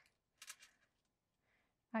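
A brief, faint rustle of cardstock pieces being slid and pressed into place on a paper card, about half a second in; otherwise quiet until a woman starts to speak at the very end.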